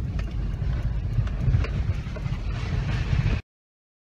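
Cabin noise of a Toyota Prado 4WD driving a rough dirt track: a steady low engine and tyre rumble with scattered small knocks and rattles over the bumps. It cuts off suddenly about three and a half seconds in.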